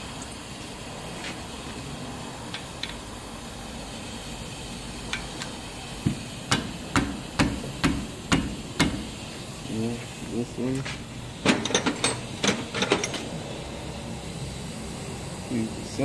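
Metal hand tools clicking and knocking on the brake caliper bolts as they are loosened: after a few quiet seconds, a run of sharp clicks about two a second, then a quicker cluster of clicks.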